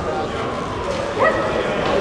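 A single short, loud shout about a second in, rising in pitch, over a steady murmur of voices in a large hall.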